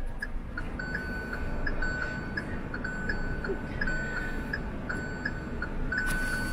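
Car's electronic dashboard warning chime: a steady run of high beeps, short pips alternating with longer held tones, sounding as the ignition is switched on.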